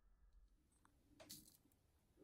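Near silence: room tone, with a faint brief click or rustle a little over a second in.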